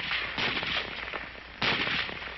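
M1 Garand rifle firing: two shots about a second apart, the second and louder one near the end, each trailing off in a short echo.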